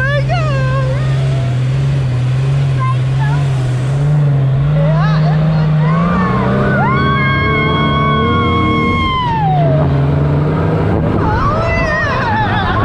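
Dune buggy engine running steadily under way, rising in pitch about six seconds in as it speeds up the dune, with riders' voices and a long held shout about seven seconds in that falls away near the tenth second.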